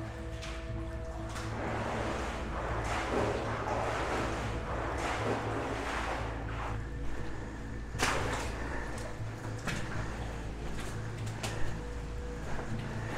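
Footsteps splashing and wading through shallow water on a mine tunnel floor, swelling roughly once a second, with a sharper click about eight seconds in. Background music tones stop about a second in, and a steady low hum runs underneath.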